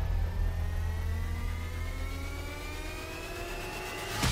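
An engine accelerating, its pitch climbing slowly and steadily, over a steady low rumble.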